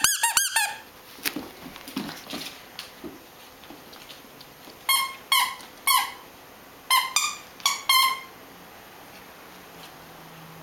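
The squeaker in a plush squirrel dog toy squeaking as a puppy bites down on it. There is a quick run of squeaks at the start, then seven more in two groups of three and four from about halfway through.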